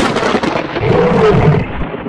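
Thunder sound effect: a sharp lightning crack, then a loud rolling rumble.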